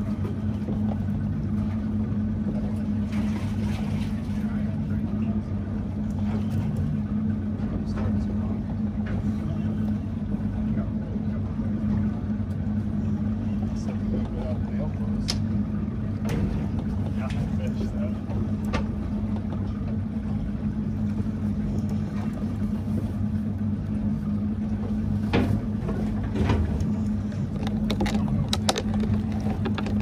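Boat engine idling steadily, a constant low hum, with scattered short clicks and knocks.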